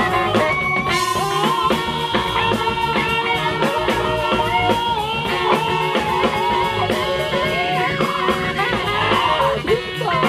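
Live funk band playing an instrumental passage over a steady drum beat and bass line, with saxophones, electric guitar and keyboard.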